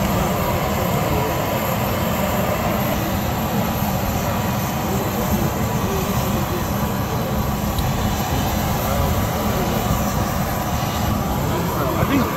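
Steady engine noise of a parked Bombardier Q400 turboprop airliner, a continuous low drone with a thin high whine over it, at an even level throughout.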